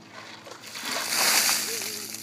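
A bucket of ice water dumped over a person's head, the water rushing and splashing down onto him, building up and loudest about a second in. Near the end he lets out a short vocal cry.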